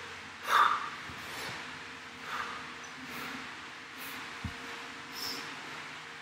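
A man breathing hard, winded from exercise: one loud sharp exhale about half a second in, then fainter puffing breaths. A short low thump comes about four and a half seconds in.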